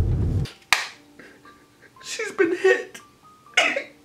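A man sobbing and wailing in short wordless bursts. It starts with a low rumble that cuts off about half a second in, and there is a sharp click just before one second.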